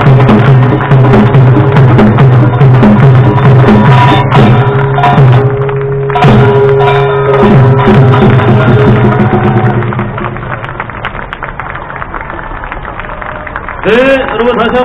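Korean traditional percussion band (pungmul) of drums and gongs playing a fast rhythm. The music drops to a much lower level about ten seconds in.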